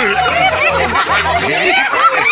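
Several people laughing and chattering over dance music with a repeating low bass note.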